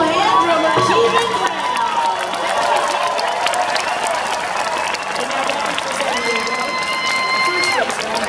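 A boy singing through a microphone over a stadium public-address system, holding long notes, the last one held for about two seconds near the end. A large crowd cheers and claps underneath.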